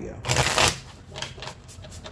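A tarot deck being shuffled by hand: a short, dense rush of cards riffling together about a quarter-second in, then fainter rustling and flicking of cards.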